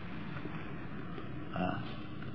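Steady background hiss and room noise of an old lecture recording during a pause in the talk, with a faint brief sound about one and a half seconds in.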